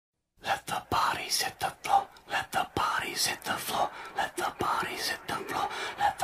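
Whispering and breathy laughter in short bursts, with a few soft knocks.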